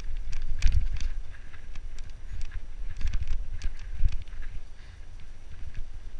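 Mountain bike rolling down dirt singletrack, with irregular clicks and knocks of the chain and frame rattling over roots and bumps over a low rumble of tyres and wind on the helmet camera.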